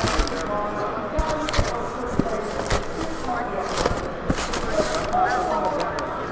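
Brown packing paper crinkling and cardboard rustling as wrapped card boxes are pulled out of a shipping case, with several sharp knocks and scrapes, over the steady chatter of many voices.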